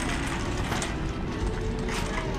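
Empty wire shopping cart rolling across a hard store floor: a steady rumble of its wheels with light clicks and rattles.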